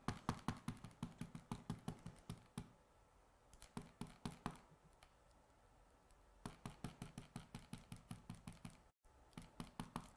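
Rapid light tapping clicks on hard plastic, coming in several quick runs of about seven clicks a second with short pauses between them.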